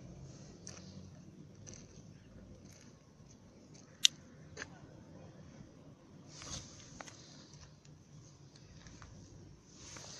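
Quiet background with a few scattered small clicks and a brief rustle; one sharp click about four seconds in stands out.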